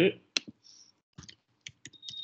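Half a dozen sharp, isolated clicks of a computer mouse being worked, spread over about two seconds.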